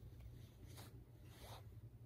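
Near silence: room tone with a low hum and two faint brief rustles.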